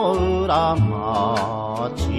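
Shōwa-era enka song recording: a melody line with heavy vibrato over sustained bass notes and regular percussion strokes.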